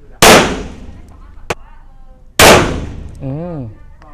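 Two shots from a Laugo Arms Alien 9 mm pistol, fired slowly about two seconds apart, each a loud crack followed by a short echo.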